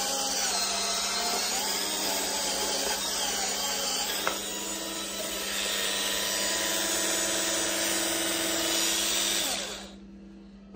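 Cordless electric spin scrubber running on its lowest speed, a steady motor whir with its sponge pad rubbing over a soapy nonstick pan. A click comes about four seconds in, and the tone then runs steadier with the pad lifted off the pan. The motor stops shortly before the end.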